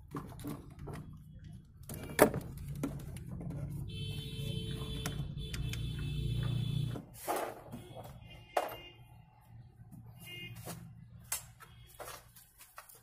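Small clicks and knocks of hands and parts being worked in a car's engine bay, with one sharp click about two seconds in. From about four to seven seconds a steady low rumble runs with a high buzzing tone over it, and a brief high tone sounds again later.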